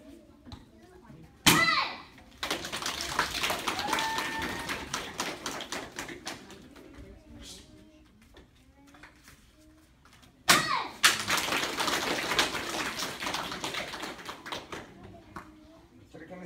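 Two taekwondo board breaks, each a sharp kiai shout with the crack of a board breaking under a kick, the first about a second and a half in and the second about ten seconds in. Each break is followed by several seconds of audience applause.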